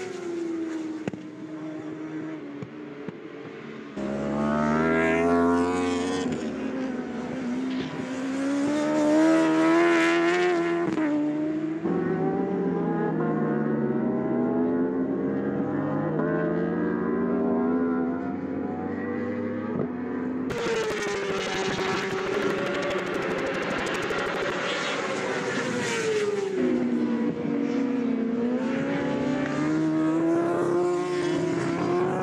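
Racing superbike engines at high revs, rising in pitch as they accelerate through the gears and falling as they slow for corners. Several bikes are heard in turn, with the sound changing abruptly a few times.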